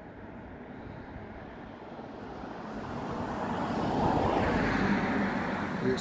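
Road traffic: a passing vehicle's tyre and engine noise, swelling up from about two seconds in and loudest around four to five seconds, then easing a little.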